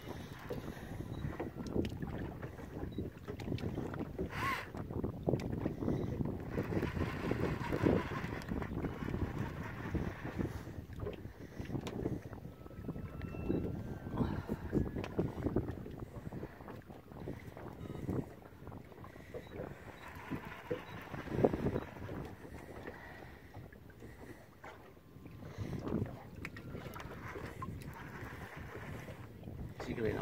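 Wind buffeting the microphone on a small boat at sea, with water sloshing against the hull.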